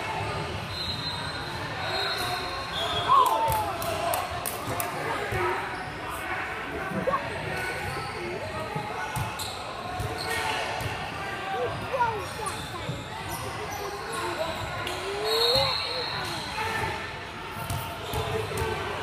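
A basketball bouncing on a hardwood gym floor in repeated scattered strikes, with indistinct voices, all echoing in a large gym.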